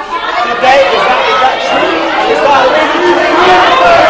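Many students talking at once, a dense mass of loud overlapping voices that breaks out suddenly and stays loud.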